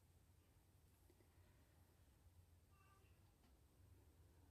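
Near silence: room tone with a steady faint low hum.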